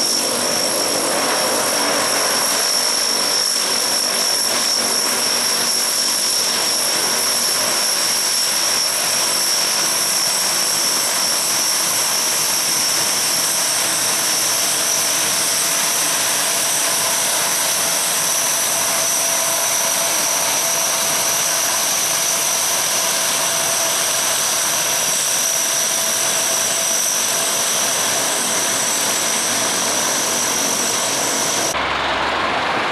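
Four Allison T56 turboprop engines of a Lockheed C-130H Hercules running as it taxis past close by: a steady, loud propeller drone with a high-pitched turbine whine over it.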